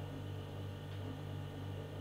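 Quiet room tone: a steady low electrical hum under faint hiss.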